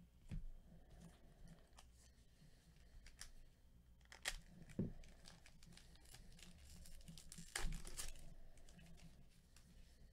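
Trading-card pack wrapper being torn open and crinkled in a few short rips, the loudest about three-quarters of the way through.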